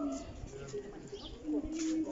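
A bird's low call, louder near the end, with faint voices of people in the background.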